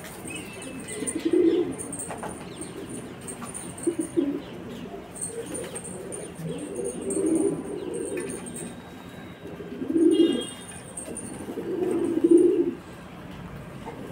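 A flock of domestic pigeons cooing, with low coos coming in bouts every couple of seconds. The loudest bouts come near the end.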